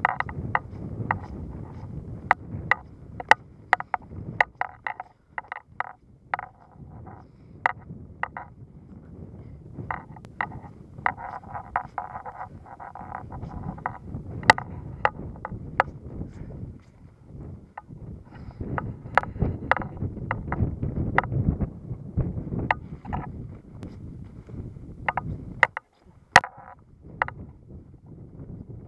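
Footsteps crunching in snow with frequent sharp clicks, over a steady low rumble of wind on the microphone.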